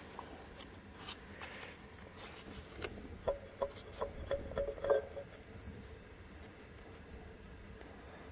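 Light metal clicks and clinks as the idler gear of a 1936 Caterpillar RD-4 engine's timing gear train is worked by hand on its shaft and bearing, its teeth knocking against the meshing gears. The clinks come between about one and five seconds in, and a few of them ring briefly.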